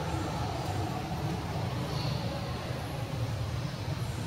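Steady low rumble with a hiss over it, with no distinct events.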